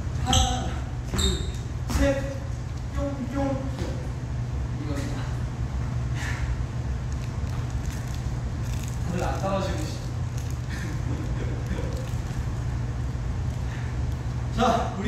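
Sneakers squeaking and stepping on a wooden dance-studio floor during dance footwork, with a few short sharp squeaks near the start. Quiet murmured speech comes and goes over a steady low hum.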